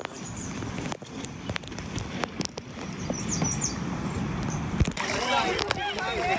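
Scattered knocks and rustling over a steady noisy hiss, then people talking near the end.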